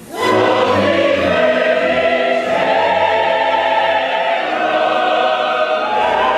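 Opera chorus and soloists singing with an orchestra, entering together loudly all at once right at the start and holding long notes, the top voice stepping up to a higher note about halfway through.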